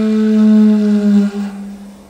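A wind instrument holds one long, low, steady note rich in overtones, which fades away over the last second.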